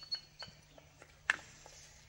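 A few faint taps and knocks as rice is scooped from a wooden bowl onto a leaf plate, one sharper tap a little past the middle, over a faint steady hum.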